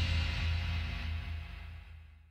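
Last chord of a psychedelic blues-rock song ringing out and fading steadily, a low bass note holding longest before it dies away at the very end.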